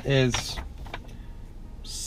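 Low steady hum of a car cabin with a few faint clicks, after a short spoken word.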